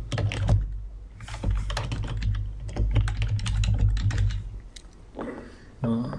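Typing on a computer keyboard: a quick, irregular run of keystrokes as a short name is typed. A low rumble sits underneath and fades out about four and a half seconds in.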